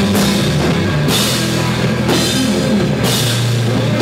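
A psychedelic progressive rock trio playing live and without vocals: electric bass, electric guitar and drum kit. Sustained bass notes run under the drums, with cymbal crashes about a second in and again near three seconds.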